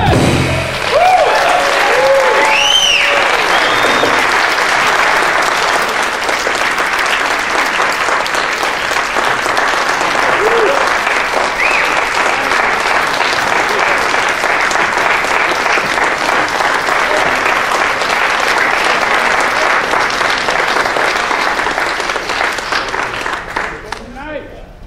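Audience applauding as the jazz band's last note stops, with a few cheers in the first few seconds; the applause dies away near the end.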